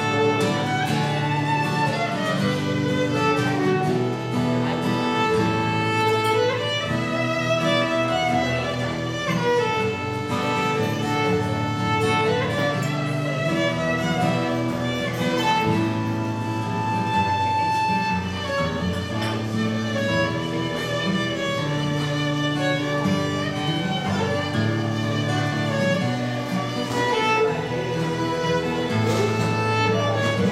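Viola and acoustic guitar duet playing a slow waltz: the bowed viola carries a gliding melody over the guitar's chord accompaniment.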